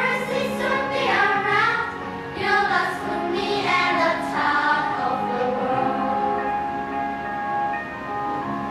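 A group of primary-school children singing an English song together, with music behind them. About five seconds in, the voices settle into long, steady held notes.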